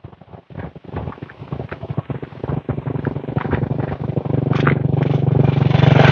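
Passing highway traffic: a vehicle engine approaching, its low drone growing steadily louder through the second half, over irregular crackling and ticking.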